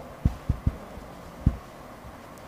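Four low, dull thumps spread across about a second and a half, over a quiet room background.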